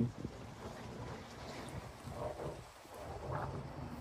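Faint, low rumble of distant thunder from a building thunderstorm.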